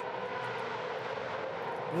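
Supercars V8 race car engines running: a steady, even drone with no rise or fall in pitch.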